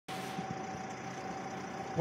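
A steady low hum with a faint, steady high-pitched tone running through it.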